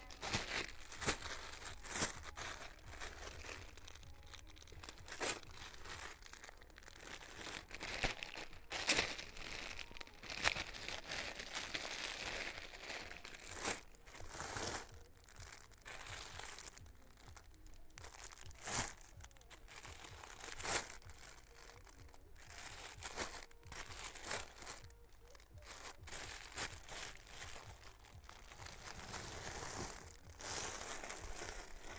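Plastic bags crinkling and rustling in irregular handfuls as packaged clothes are rummaged through and pulled out, with sharp crackles throughout.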